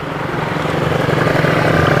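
An engine running steadily, slowly getting louder.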